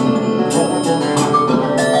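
Percussion ensemble playing live: held pitched notes on marimba-type mallet instruments under a steady pulse of sharp, bright strikes repeating a few times a second.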